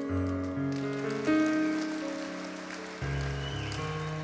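Grand piano playing slow, sustained chords with deep bass notes. For a couple of seconds in the middle, a soft patter of noise rises behind it.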